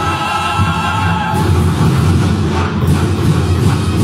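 Loud music with a chorus of voices singing over a steady, deep low end.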